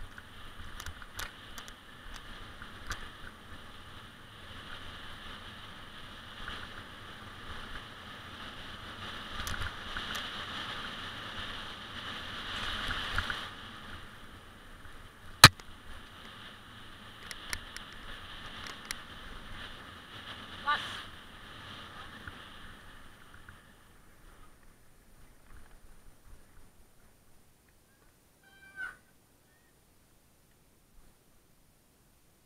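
Riding noise on a rough dirt trail: a steady hiss with scattered knocks and one sharp crack about halfway through. The noise fades to near quiet in the last few seconds.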